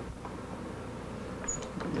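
Steady low shop room noise, with a few faint clicks about one and a half seconds in as wooden spreader blocks are handled and set into a guitar-side mold.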